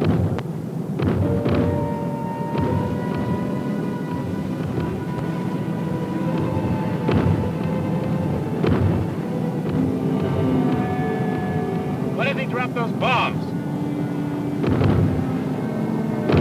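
Dramatic film-score music with long held notes over a steady aircraft engine drone, broken several times by sharp flak bursts.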